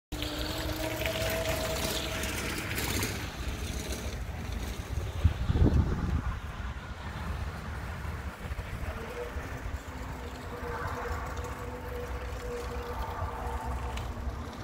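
Wind rumbling on the microphone, with a surge about five seconds in. A faint, steady electric hub-motor whine from the approaching electric tricycle grows from about nine seconds on.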